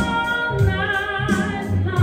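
A woman singing a soul/R&B-style song live into a microphone, holding long notes with a wavering vibrato, over an accompaniment with a deep bass line.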